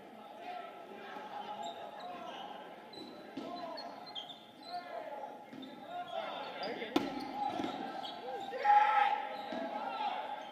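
Many players calling and shouting at once in a large echoing gym during a dodgeball game, with a single sharp smack of a ball about seven seconds in. A louder burst of shouting follows near the end.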